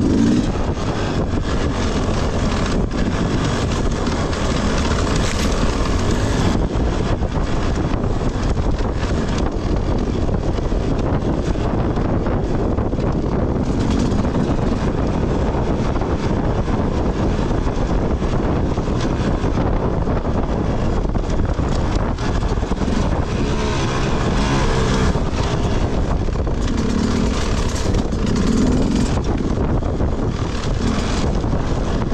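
Enduro dirt bike engine running at low speed as the bike is ridden over rough ground, with frequent knocks and rattles and wind on the microphone. The engine note swells briefly a few times near the end.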